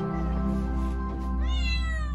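A six-month-old kitten meows once, about a second and a half in: a single short meow that rises and then falls in pitch, asking to be let out the door. Soft background music plays under it.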